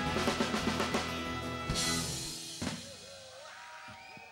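Live band with drum kit ending a song: a quick drum fill, a held final chord, and one last hit about two and a half seconds in, after which the sound dies away.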